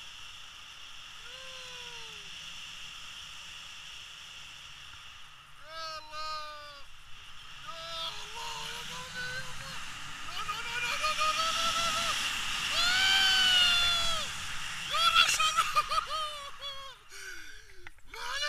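Wind rushing over the microphone of a paraglider in flight, growing louder for a few seconds in the middle as the wing banks into a steep turn. Excited shouts, exclamations and laughter from the people flying come and go over it.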